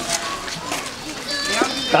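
Background chatter of several voices, with children calling and playing.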